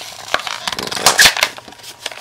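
A Hot Wheels blister pack being torn open by hand: the cardboard backing card ripping and the clear plastic blister crackling, in a run of short rips and clicks that is loudest about a second in.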